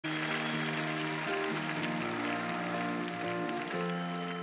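Held keyboard chords that change every second or so, opening a song, with an audience applauding over them.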